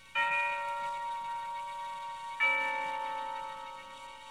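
Two strokes of a bell-like chime, each struck suddenly and left ringing and slowly fading. The second comes about two seconds after the first and adds a lower note.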